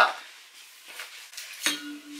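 Faint rustling and small clinks as a backpack compartment is opened and a reusable water bottle is lifted out, with a sharper clink near the end. Right after it a steady hummed note begins.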